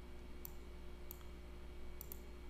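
Two short, sharp computer mouse clicks, about half a second and a second in, over a steady low hum.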